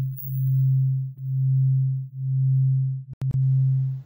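A low, steady electronic tone that swells and fades about once a second, with a few sharp clicks just after three seconds in.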